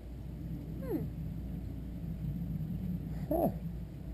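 A person's murmured "hmm" about a second in and a soft "huh" near the end, each falling in pitch, over a steady low rumble in the background.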